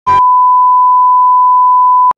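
A loud, steady, high-pitched beep tone, one pure note held unchanging for about two seconds after a short burst of noise at its start, then cut off abruptly: an edited-in bleep sound effect.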